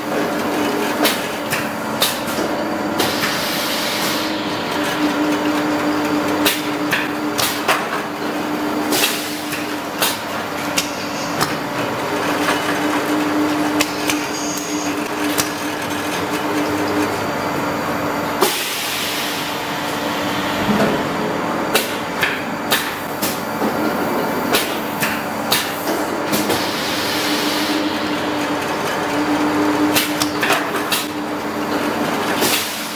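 Automatic wooden spoon hot pressing machine running: a steady motor hum under frequent irregular clicks and clatter of wooden spoons moving through the feeder, with three short bursts of hissing.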